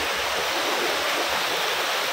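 River water rushing steadily over a low concrete weir and stepping stones.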